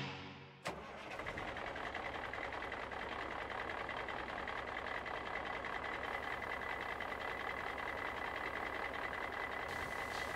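A garbage truck running, a steady even engine noise with a faint high steady whine, starting about a second in after a music ending fades out.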